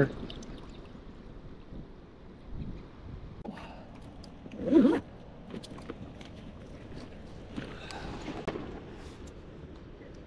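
Outdoor ambience of someone wading out of shallow water and moving about on a muddy bank: water swishing, wind on the microphone and scattered clicks of gear being handled. A short vocal sound comes about halfway through.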